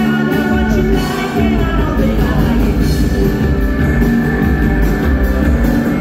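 Live rock band playing: a man singing lead over guitar, bass guitar, drums and keyboard, the vocal clearest in the first couple of seconds.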